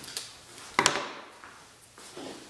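A small rubber brayer (hand ink roller) handled on an inked printing plate: a light click, then one sharper knock a little under a second in as it is set down on the plate.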